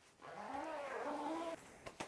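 A drawn-out wordless vocal sound lasting just over a second, rising and then falling in pitch, most likely the man humming or groaning as he bends to check the fit of the trousers.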